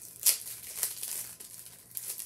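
Clear plastic packaging crinkling and rustling as it is pulled open by hand. The loudest moment is a sharp rustle about a third of a second in, followed by further short crinkles.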